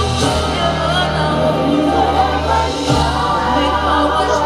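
A woman singing lead live into a handheld microphone over sustained low chords, amplified through a concert PA in a large hall. The chord beneath her changes about a third of a second in and again just before three seconds.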